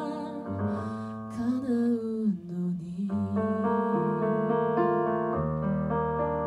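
A woman singing a slow ballad over stage-piano accompaniment. Her held, wavering note ends about two seconds in, and the piano plays on in sustained chords.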